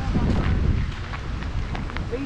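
Wind buffeting the camera microphone in a loud, uneven low rumble, with faint footsteps on a gravel path.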